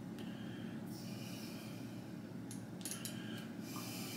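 A man breathing through his nose, two soft breaths, over a low steady room hum, as the burn of a very hot sauce sets in at the back of his throat.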